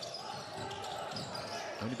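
Indoor arena ambience during a basketball game: a steady crowd murmur with a basketball being dribbled on the hardwood court.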